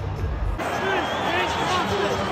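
Low rumble of stadium flame cannons firing, cut off abruptly about half a second in. It gives way to stadium crowd noise with voices over PA music.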